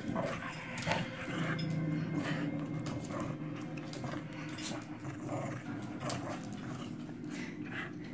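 Small dogs growling in play as they tug at a plush slipper, a low continuous growl that is strongest a couple of seconds in, with scuffling and clicks mixed in.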